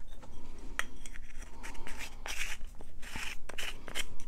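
Light handling of a small plastic pot of embossing powder and paper on a craft tray: one sharp click a little under a second in, then several short, soft scrapes and rustles.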